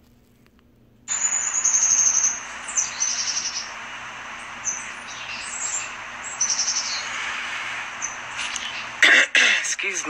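Birds chirping, high and repeated, over a steady hiss of outdoor background noise. Both start suddenly about a second in.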